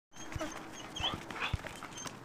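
Two dogs running and playing, their paws thudding on the ground a few times, with a few brief, faint high squeaks.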